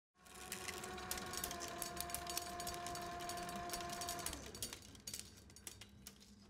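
Motor of a flatbed film editing table running a reel of film: a steady whine with rapid clicking and clatter, which stops a little over four seconds in and leaves fainter clicks and a low hum.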